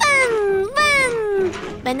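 A child's voice imitating a car engine, 'vınnn, vınnn', in toy-car play: two long calls that each fall in pitch. A spoken word begins near the end.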